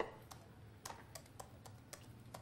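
Keystrokes on an Apple PowerBook laptop keyboard: slow, uneven typing, about seven faint key clicks.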